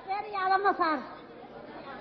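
Speech only: a voice talks briefly in the first second, then faint background chatter of people.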